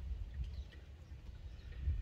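Low, uneven outdoor background rumble, with no clear event in it.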